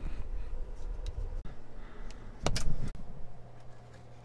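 Low steady electrical hum, with a brief double knock about two and a half seconds in.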